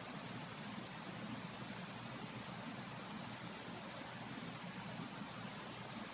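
Faint, steady background hiss of room tone, even throughout with no distinct events.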